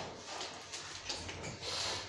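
Quiet room tone in a pause between spoken phrases, with faint soft noises and no clear event.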